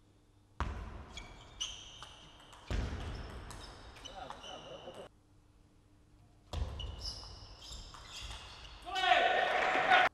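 Table tennis play in a hall: the ball clicking off bats and table, brief high squeaks of shoes on the court floor, and sudden shouts or cheers after points, the loudest in the last second.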